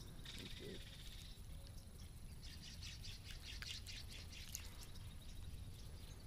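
Faint bird chirps and a quick high trill from the riverbank, over a low steady background rumble.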